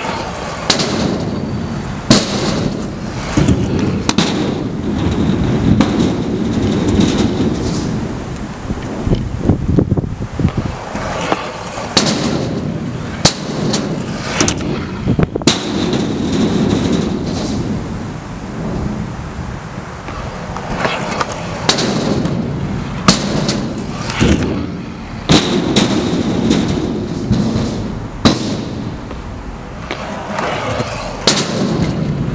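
Scooter wheels rolling on concrete ramps in repeated rumbling passes, every few seconds, with sharp cracks and bangs throughout from landings and the scooter striking the ramps and coping.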